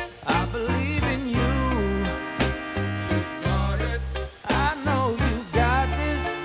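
Background music with a steady beat and bass line under a wavering lead melody.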